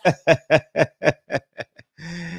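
A man laughing: a run of about nine short bursts that slow down and fade away.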